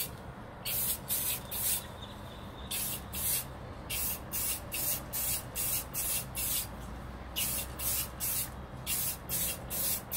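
Aerosol can of silver spray paint being sprayed in quick short bursts, a hiss repeating two or three times a second with a few brief pauses.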